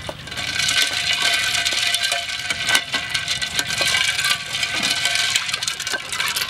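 A ladle stirring in a large glass jar of juice, clinking and rattling quickly and continuously against the glass, with a faint ringing of the jar behind the clinks.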